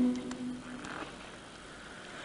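A Sardinian male choir's held chord ending about half a second in, followed by a pause that holds only faint hiss and a few small ticks.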